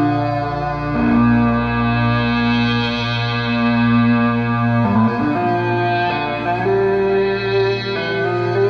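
LinnStrument playing a Serum synth patch through a distorted guitar amp simulator, sounding like an overdriven electric guitar with feedback. Long sustained notes over a low drone change pitch about a second in, bend and slide near the middle, and shift again later.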